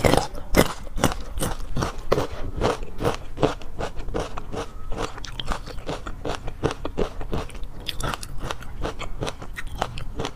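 Close-miked chewing of a mouthful of fish roe: a rapid, uneven run of small crackling pops and crunches.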